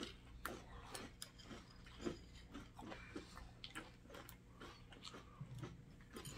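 Faint chewing and crunching of flake cereal in milk, heard as many short, soft clicks and crunches scattered through, a few a second.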